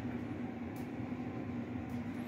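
A steady low hum under faint room noise, with a couple of brief, faint rustles as the phone is handled.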